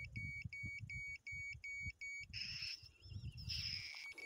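Homemade ionic long range locator's electronic beeper sounding a rapid series of short high beeps, about three a second: its signal that it is right over a target, the buried silver coins. The beeping stops a little over two seconds in and gives way to a hiss, with faint low rumble throughout.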